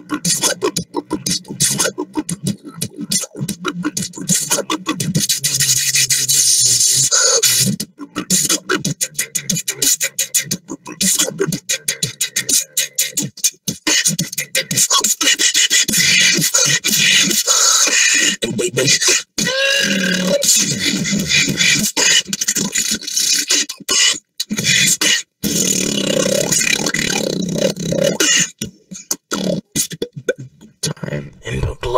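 Human beatboxing: one beatboxer's fast, dense stream of mouth-made kicks, snares and hi-hats with bass sounds. A short pitched vocal sweep comes about two-thirds of the way through.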